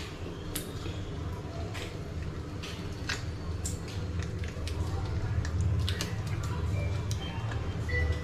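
Small crisp cracks and clicks of a raw giant prawn's shell being broken and pulled apart by hand, scattered irregularly, over a steady low hum.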